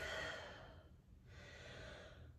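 A woman's soft breathing: a breath out that fades away in the first half second, then a faint breath near the end.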